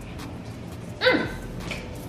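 A short high vocal cry about a second in, sliding steeply down in pitch, followed by a brief smaller sound.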